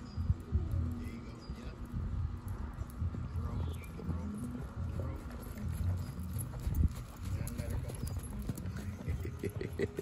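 Hoofbeats of a horse loping on soft sand arena footing, a repeated run of dull thuds.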